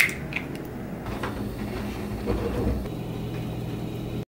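Quiet kitchen sounds over a steady low hum and hiss, with a few soft clicks and knocks of hands and utensils at a glass mixing bowl.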